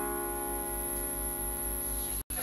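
A chord on an electronic keyboard, held steady at moderate level with no new notes struck.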